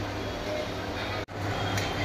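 Starch water dripping and trickling from a plastic colander of cooked rice into a plastic tub, over a steady low hum. The sound cuts out abruptly about a second and a quarter in, then a similar steady background returns.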